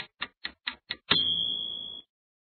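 Countdown-timer sound effect: five quick, even ticks at about four and a half a second, then about a second in a loud ring with one steady high tone, marking that time is up.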